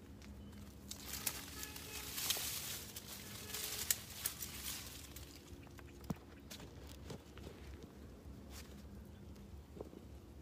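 Close rustling and scraping with scattered sharp clicks, loudest from about one to five seconds in, as a person shifts about on a rock right next to the recording phone. A faint steady low hum sits underneath.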